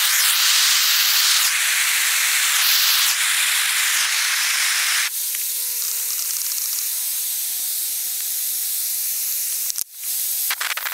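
Propane torch hissing steadily while heating a bronze casting, louder and rougher for the first five seconds, then quieter with a steady whistling tone in it.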